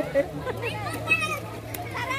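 Children's voices and calls from people playing in an outdoor pool, over a steady low hum.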